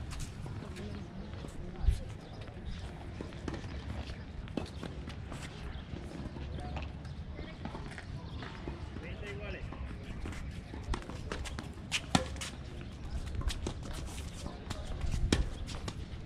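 Tennis court sounds: a few sharp knocks of a tennis ball being hit or bounced, a loud one about two seconds in and a cluster around twelve seconds, over a steady low rumble and faint background voices.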